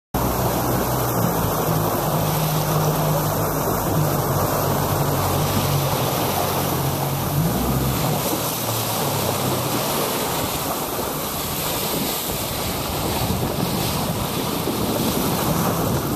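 Wind buffeting the microphone over rushing, choppy water, with a motor's steady low hum for the first half that drops out about halfway through.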